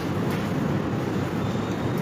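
Steady background noise of the room, an even low rumble with a little hiss above it.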